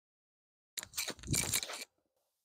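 A brief crunching, rustling burst about a second long from a disc golf forehand drive being thrown off the tee: the thrower's footwork and arm swing through the release.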